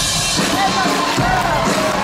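Live band music with a drum kit playing, the bass drum beating under the music.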